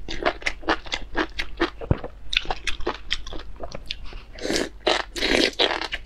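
A person eating spicy enoki mushrooms in chili oil: quick, short chewing sounds, then longer slurps as a bundle of the strands is drawn into the mouth, about four and a half seconds in.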